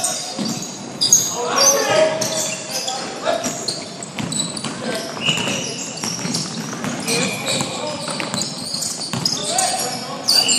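Basketball game in a large gym: sneakers squeaking sharply and often on the hardwood court as players run the floor, the ball bouncing, and players calling out.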